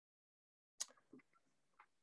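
Near silence in a pause of a video call, with one faint short blip just under a second in.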